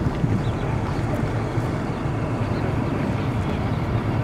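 Wind buffeting the camera's microphone: a steady low rumble with no breaks.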